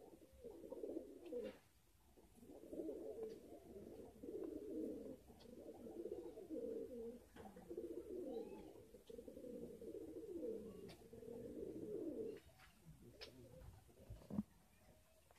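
Domestic pigeon cooing over and over in a low, warbling run with only brief pauses, stopping about twelve seconds in: a courting pigeon's display coo as it puffs up and turns with its tail fanned.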